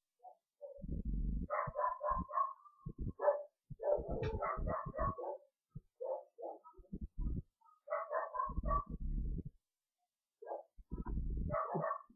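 A dog barking in repeated short runs, with dull low thumps between the barks.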